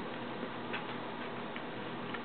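A few faint, irregular light clicks over a steady background hum.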